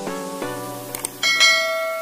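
Background music of short repeated notes. About a second in there is a click, then a bell chime that rings on: the click-and-bell sound effect of a subscribe-button animation.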